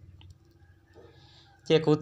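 A short pause in a man's spoken storytelling: faint low hum and a few small clicks, then his voice resumes near the end.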